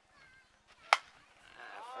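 A slowpitch softball bat hitting a pitched softball: one sharp crack about a second in.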